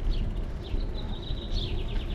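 Birds chirping, with a quick trill in the second half, over a steady low rumble of wind and road noise from a moving bicycle.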